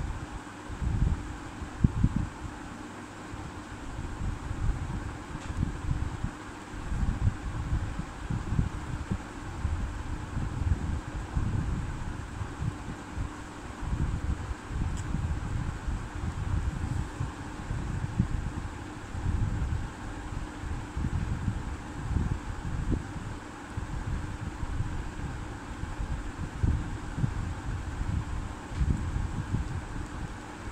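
Moving air buffeting the microphone: an uneven, gusting low rumble over a faint steady hum.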